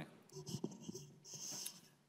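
Faint rustling and a few small clicks, with a brief soft hiss about a second and a half in, like handling noise at a table microphone.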